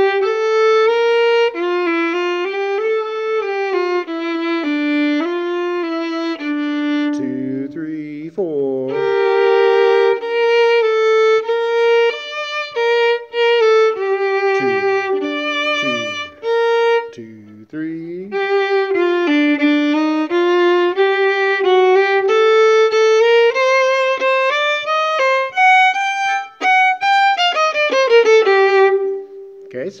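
Solo violin playing a melodic line in its middle register, one note after another in short steps, breaking off briefly twice.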